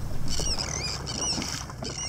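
A small boat running over calm sea, a steady low rumble with water noise, with short high warbling squeaks over it several times.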